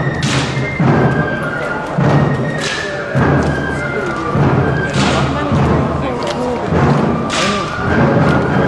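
March music with a slow, steady bass drum beat a little over a second apart and a bright crash on every second beat, over held band notes.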